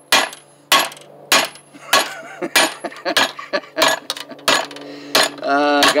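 A hammer striking flattened copper tube over a steel bench vise, about ten sharp metallic blows in a steady rhythm, flattening the tube into a busbar.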